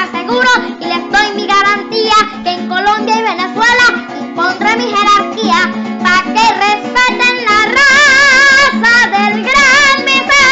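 A young boy singing a Venezuelan folk song into a microphone over a plucked-string accompaniment. He holds long wavering notes about eight seconds in and again near the end.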